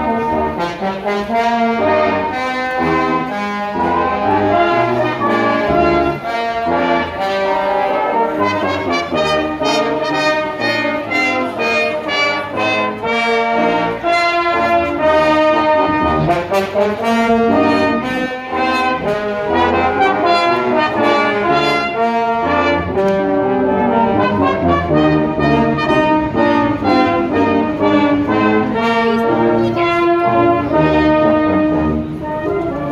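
Brass band playing a tune, tubas and a trombone under higher brass, in held chords that move steadily without a break.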